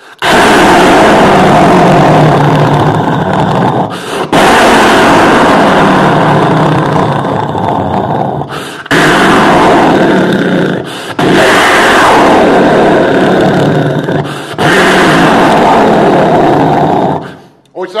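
Recorded heavy-rain sound effect played very loudly through a PA speaker, close to distorting, with four brief breaks before it fades out near the end.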